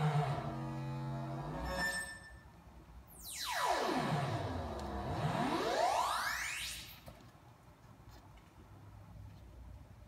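Eurorack modular synthesizer voice modulated by an Intellijel Quadrax function generator: a steady buzzy tone for about two seconds, then a pitch sweep that dives low and glides back up over about three seconds, dropping to a faint tail near the end.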